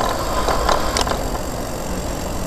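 Steady rumble of wind and road noise from a moving bicycle, with a few sharp clicks or rattles about half a second and a second in.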